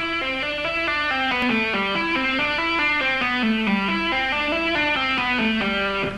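Electric guitar playing a legato rock lick at slow tempo: hammered and pulled-off single notes running together without gaps, about five or six a second, stepping down and back up in pitch.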